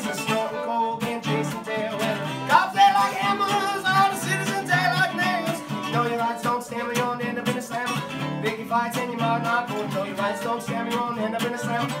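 Fiddle playing a melody over a steadily strummed acoustic guitar, an instrumental break with no singing; the fiddle slides up into a note a few seconds in.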